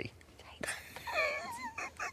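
A person's voice giving a short, high, wavering 'ooh'-like sound that bends up and down, about a second in.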